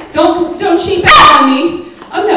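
A poodle barking, with the loudest, sharpest bark just after a second in, mixed with a woman's voice.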